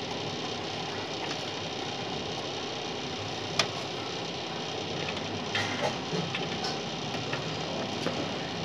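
A few short clicks and taps of a hand working among the cables and parts inside an open desktop PC case, the sharpest a little past the middle, over a steady background hiss.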